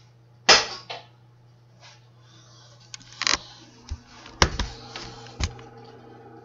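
A few sharp knocks and clatters of things being handled in a kitchen. The loudest comes about half a second in and rings on briefly, with another about three seconds in and two sharp clicks near the end.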